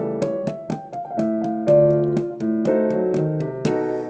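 Piano playing the soprano line of a choral piece over chords, for the singers to learn the part. Notes are struck at a steady pace, about four or five a second, with several sounding together.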